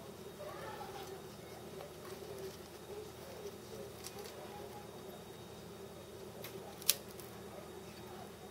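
Quiet room tone: a low steady hum with faint murmured voices, a few small clicks, and one sharp click about seven seconds in.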